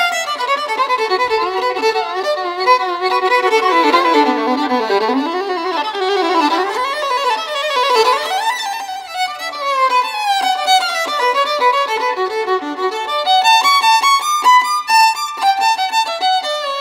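A fiddle playing a free-flowing melody, sliding between notes in the middle, then breaking into quick runs of notes in the last few seconds.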